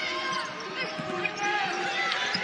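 A basketball being dribbled on a hardwood court, a few short bounces under the murmur of an arena crowd.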